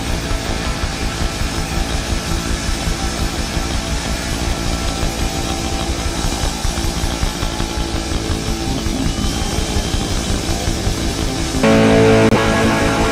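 Loud punk rock music with distorted electric guitar. The full band comes in much louder just before the end.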